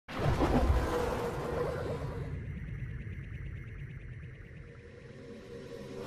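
Intro music sting for a logo reveal: it starts suddenly with a full-range swell, then fades away over several seconds, its high end dropping out after about two seconds.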